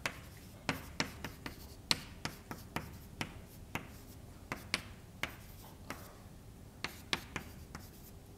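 Chalk writing on a blackboard: a run of sharp, irregular taps and short scrapes, a few a second, with a pause of about a second and a half before the last few strokes.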